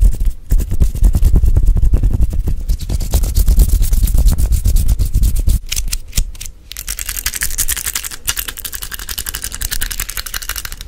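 Fast ASMR hand sounds made right at the microphone: hands fluttering and rubbing close to the grille, a dense run of quick strokes with a deep, muffled boom for about the first half. From about six seconds in it turns to lighter, hissy rubbing of the hands and fingers against and around the mic.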